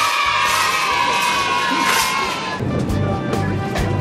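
Crowd cheering and shouting over music, starting abruptly and fading about two and a half seconds in. A music track with a strong low beat then carries on.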